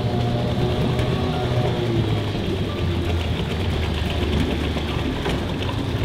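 Small petrol outboard motor idling steadily with a low hum, running again after its disconnected fuel pipe was reconnected and the motor restarted.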